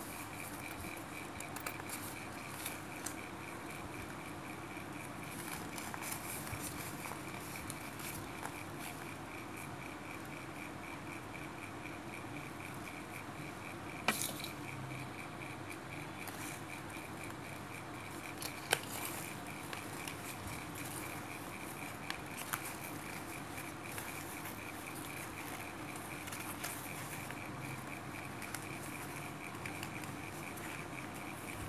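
Quiet steady room hum with a faint, finely pulsing high tone, under soft rustles and small clicks from hand-sewing a fabric lining with needle and thread. Two sharper clicks come about halfway through.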